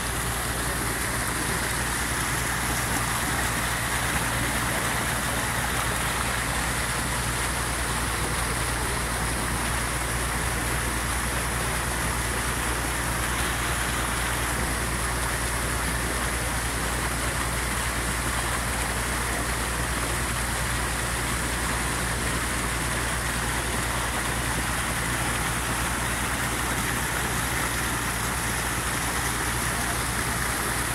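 Muddy floodwater rushing and churning through a freshly cut earthen drainage channel dug to let the flood out, a steady, unbroken rush.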